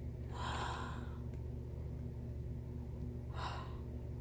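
Two breathy intakes of breath from a person, a longer one about a second in and a shorter one near the end, over a steady low hum.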